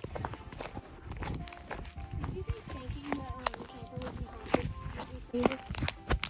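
Footsteps and handling knocks from a hand-held camera carried low while walking, irregular throughout.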